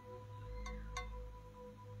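Faint steady tone, a single pitch with its octave above it, held over a low hum, with two light clicks about a second in.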